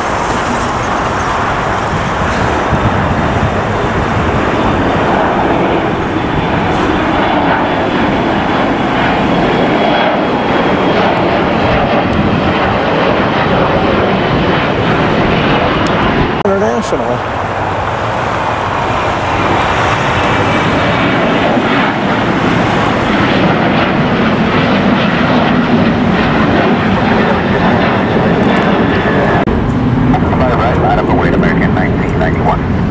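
Jet engine noise of a twin-engine airliner climbing away after takeoff: a loud, steady rush.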